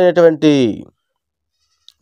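A man's voice speaking in Telugu, its last word drawn out and falling in pitch, breaking off about a second in.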